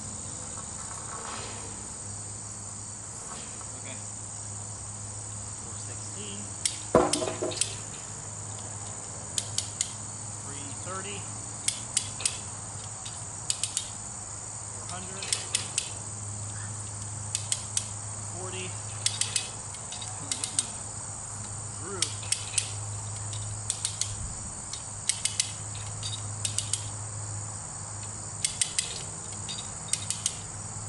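Hand-crank winch ratchet clicking in short runs of two to four clicks every second or two as it is cranked under load, with one louder metallic clank about seven seconds in. A steady high chorus of insects runs underneath.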